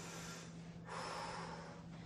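A woman's breath picked up by her microphone during a stretch: a soft, noisy breath starting a little under a second in and lasting about a second, over a faint steady hum.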